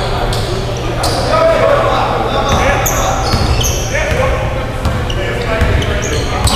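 Basketball game on a hardwood gym floor: a ball bouncing, sneakers giving short high squeaks, and players' voices calling out, all echoing in a large hall over a steady low rumble.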